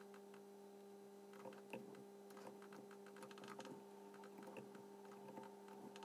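Near silence: a faint steady hum with two low tones, with scattered faint clicks from the computer keyboard and mouse being worked.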